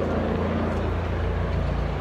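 Helicopter flying overhead, a steady low drone of rotor and engine.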